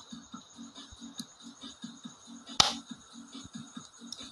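A single sharp mechanical click about two and a half seconds in, as the transfer switch's changeover mechanism is turned and snaps the two-pole breaker's handle over, with a faint tick a little earlier over low background noise.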